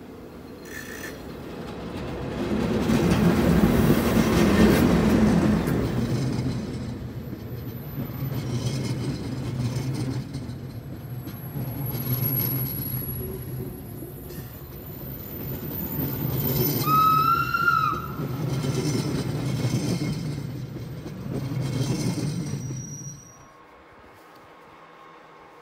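Metre-gauge Matterhorn Gotthard Bahn electric locomotive and Glacier Express coaches passing close by. The locomotive's pass is loudest a few seconds in, then the coaches roll past in repeated swells of wheel noise, with a brief wheel squeal about two thirds of the way through. The sound cuts off sharply near the end.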